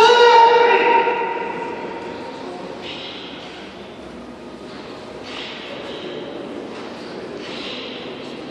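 A loud karate kiai shout from the kata performers, held for about a second and ringing in a large hall. After it come several short hissing sounds, a couple of seconds apart.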